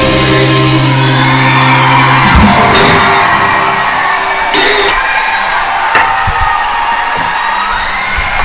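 Sitar played with a slide, lap-steel style, its strings ringing in notes that glide up and down in pitch. A low held note stops about two seconds in, then a few sharp plucked strokes ring out and fade.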